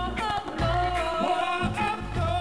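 Live band music with a singer holding long sung notes over a steady bass line.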